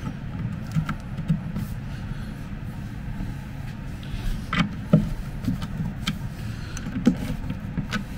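A few light clicks and knocks from metal furniture hardware and a screwdriver being handled against particleboard panels during cabinet assembly, over a steady low rumble.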